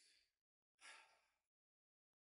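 Near silence, with one faint, short breath from a man about a second in.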